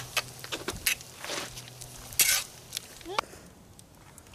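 A metal fork stirring and scraping chili in a cast iron Dutch oven: a few separate scrapes, the strongest about two seconds in.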